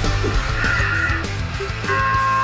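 Background rock music with bass and a steady drum beat, with a harsh high tone lasting about half a second around the middle.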